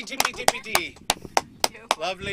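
A few people clapping by hand at the end of a song: sharp, separate claps, roughly three or four a second.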